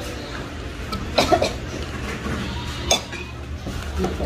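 A metal spoon clinking against a ceramic soup bowl: a quick cluster of knocks a little over a second in and a single knock near three seconds.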